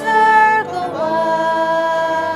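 A woman's voice leading a hymn, sung slowly with a long held note starting about halfway through.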